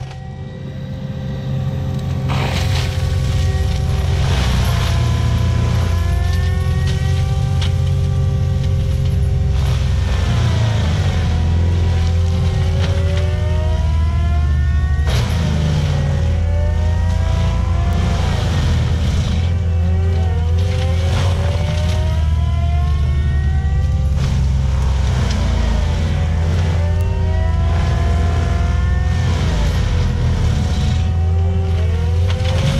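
ASV RT-120 Forestry compact track loader running hard with its Prinoth M450s mulcher head grinding brush and saplings. The diesel engine drones steadily while the whine of the mulcher drum repeatedly sags and climbs back as it bites into wood and recovers. Sharp cracks of wood being chipped come through now and then.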